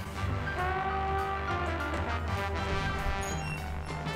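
Background music: an instrumental track with held notes over a steady bass line.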